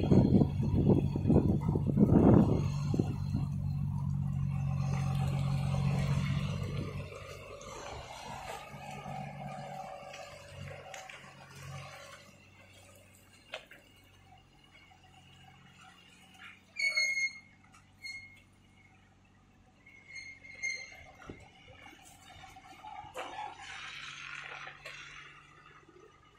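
Diesel engine of a flatbed tractor-trailer running as the truck pulls away, loud and throbbing at first, then a steady hum that fades over the first seven seconds or so. After that it is faint, with a few short bird calls about two-thirds of the way in.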